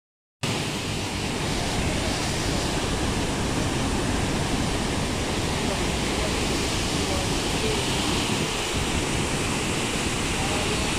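Murchison Falls, the Nile forced through a narrow rock gorge, making a loud, steady rush of falling and churning water close up. It starts abruptly about half a second in.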